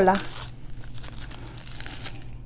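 A drinking straw's paper wrapper being torn and crinkled off. There is a sharp tear at the start, softer crinkling after it, and another rustle near the end.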